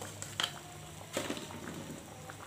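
Quiet cooking sounds from an aluminium wok of simmering rendang sauce as sugar is tipped in from a plastic cup: a sharp light tap about half a second in and a softer knock a little past one second, with a few small ticks and a faint simmer underneath.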